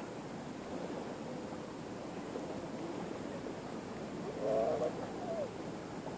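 Steady open-air background noise by a river. A short wavering call rises out of it about four and a half seconds in.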